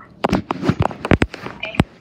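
Handling noise on a phone's microphone: a quick, irregular series of knocks and taps as hands grab and jostle the phone, with brief bits of a child's voice between them.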